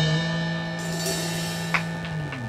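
A jazz combo's final chord ringing out: a held electric-bass note and a Roland GO:PIANO digital piano chord sustaining and slowly fading, with a cymbal wash coming in about a second in.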